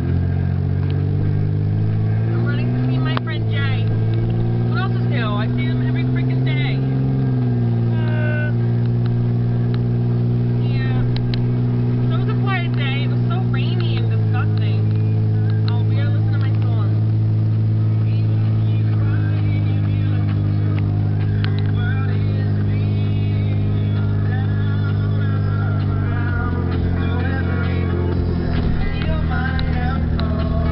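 Pop song with singing on the car stereo, heard inside the cabin over the car's steady engine and road drone.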